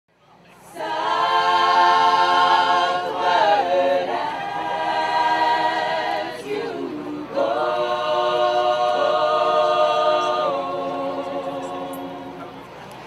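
All-female a cappella group singing in close harmony with long held chords, fading in over the first second, with a short break in the middle.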